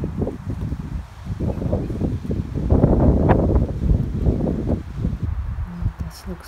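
Wind buffeting the microphone in irregular gusts, the strongest about three seconds in.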